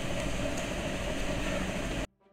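Steady background hum and hiss with no distinct events.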